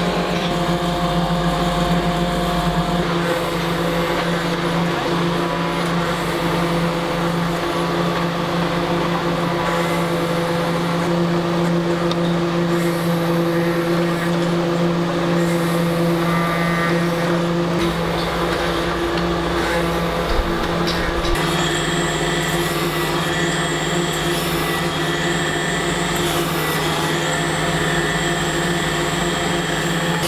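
Workshop machinery cutting and grinding trochus shell into button blanks: a steady motor hum with several held tones over a noisy bed. The mix of tones shifts about three seconds in and again about twenty-one seconds in.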